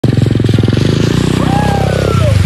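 125cc single-cylinder dirt bike engine running under throttle as it rides through a rain puddle, with water spraying from the wheels. A voice calls out over it in the second half.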